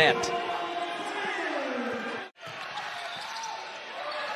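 Basketball game sound in an arena after a made shot: the crowd reacting, with a voice sliding down in pitch and the ball bouncing on the hardwood. The sound cuts off abruptly a little past halfway, then quieter game sound picks up again.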